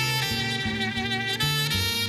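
Live instrumental gospel worship music: a saxophone holding a sustained melody over electric bass and keyboard. The bass line steps from note to note beneath it.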